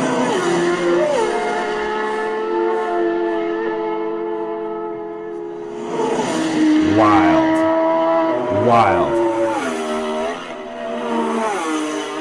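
Racing motorcycle engine at high revs, its pitch held steady for several seconds, then sweeping sharply up and down twice as bikes pass at speed.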